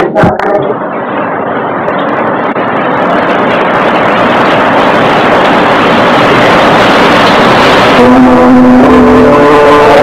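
A loud, even rushing noise builds over several seconds; about eight seconds in, a group of voices begins chanting.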